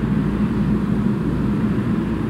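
Steady low background rumble, even throughout, with no distinct events.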